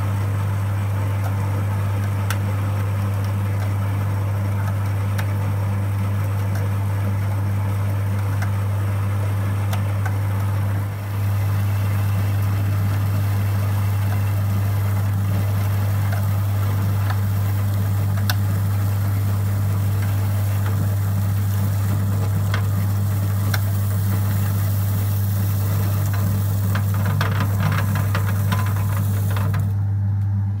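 Motor-driven roller grain mill crushing malted barley: a steady low motor hum under the crackle of grain passing through the rollers, with a brief dip about a third of the way in. Near the end, as the hopper empties, sharper ticks of the last kernels going through the rollers.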